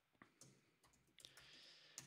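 Near silence with a few faint computer keyboard key clicks as code is typed.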